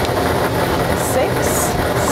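Lottery draw machine running, its air blowers making a steady noise as they toss the numbered balls around inside four clear tubes.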